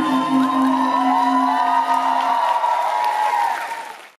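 Stage music ending on a long low held note that stops a little past halfway, with an audience cheering and whooping over it; the sound fades out at the end.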